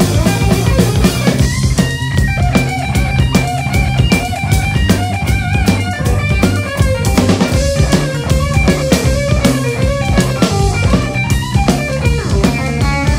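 A live blues-rock band playing: electric guitar lines over electric bass and a drum kit keeping a steady rhythm.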